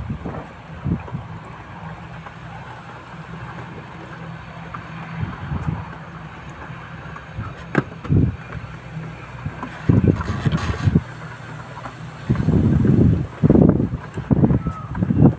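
Wooden stick stirring sugar syrup in a plastic bucket: irregular low sloshing and dull knocks, the longest near the end, over a steady low hum.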